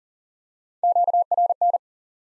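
Morse code sent at 40 words per minute as a single steady beep tone, keyed on and off in three quick groups of dots and dashes lasting about a second, starting almost a second in. It sends the QSO element for "noise" again right after it was spoken.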